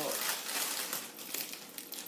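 Clear plastic gift-basket bag crinkling as it is handled and gathered over a filled basket, in irregular rustles.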